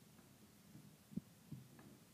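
Wooden rolling pin working a clay slab on a canvas-covered table: two short, dull thumps a little over a second in, the first sharper, in otherwise near quiet.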